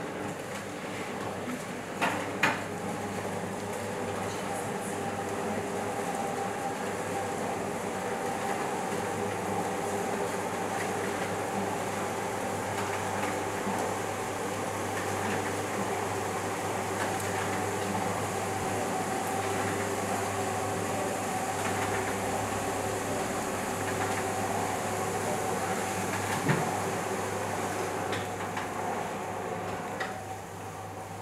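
Motorised window blinds lowering, their motors giving a steady hum. There are a couple of clicks about two seconds in, and the motors stop at the end.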